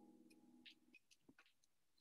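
Near silence: faint room tone with soft steady low tones and a few small clicks.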